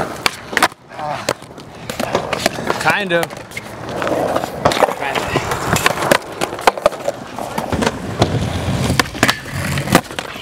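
Cheap Walmart skateboard rolling on concrete, with repeated sharp clacks of the tail popping and the board landing during flatground tricks.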